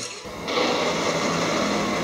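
Steady rushing noise from the film edit's soundtrack, setting in about half a second in, with a faint low hum coming in near the end.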